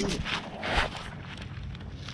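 Rustling and handling close to the microphone, as grass and clothing brush against it: a short burst of rustle in the first second, then a quieter hiss.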